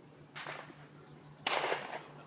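Two distant gunshots from a shooting range, about a second apart, the second louder and sharper, each trailing off briefly.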